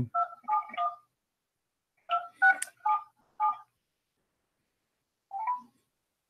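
Telephone keypad touch-tones: three quick beeps, a pause, then four more, and one short tone near the end. A phone number is being dialed to place a call.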